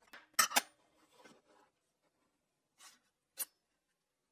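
Small metal parts handled on a table saw: two sharp clicks close together as a steel piece is set into the throat insert, then light scraping. A brief scrape and one more sharp click follow near the end.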